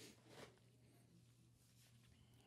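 Near silence: room tone, with a faint brief rustle about half a second in.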